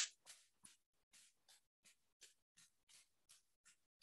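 Faint, steady tapping of a stick against the side of a leg, about three taps a second, as in qigong self-massage tapping.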